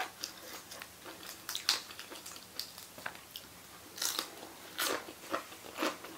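Close-up chewing and crunching of crisp fresh lettuce leaves with noodles: irregular short crunches, the loudest about four seconds in and near the end.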